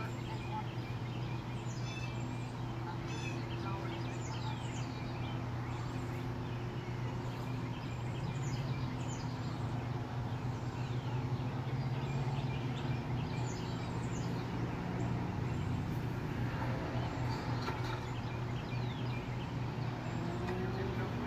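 Birds chirping repeatedly over a steady low hum.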